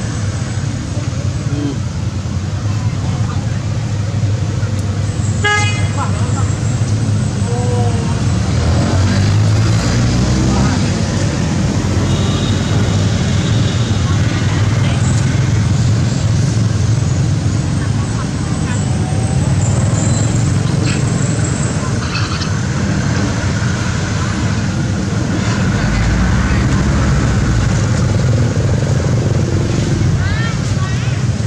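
Steady outdoor din of road traffic and people talking, with a vehicle horn tooting briefly.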